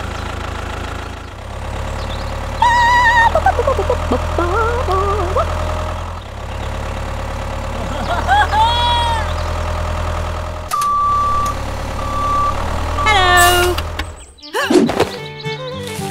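Tractor engine sound effect running with a steady low putter. It is broken by three short, high, squeaky voice-like calls and two short beeps about eleven and twelve seconds in. A swooping sound near the end leads into music.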